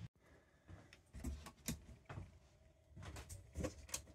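Faint, scattered clicks and knocks of handling inside an RV trailer, with a last sharper click near the end as a ceiling light's push switch is pressed.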